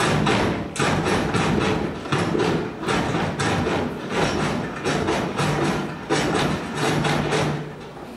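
Stepping: a run of sharp stomps and hand claps coming in quick, irregular bursts, with a few brief pauses between phrases.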